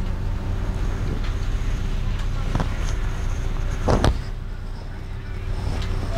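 Car engine idling with a steady low hum, heard from inside the cabin with the driver's window open. About four seconds in comes one short, louder sound over it.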